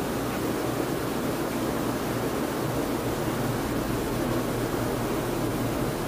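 Steady, even background hiss with no other events: room tone.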